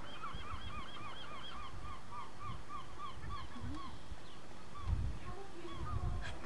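A bird calling a long run of short, repeated, arched notes, about five a second, which grow fainter after about four seconds, over a low rumble.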